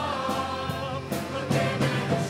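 Show choir singing over live pop-rock band accompaniment, with drum hits cutting through the voices.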